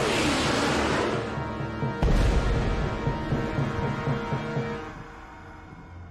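Background music with a falling whoosh, then a sudden deep boom about two seconds in that dies away over the next few seconds: sound effects of a missile reaching and striking the airliner.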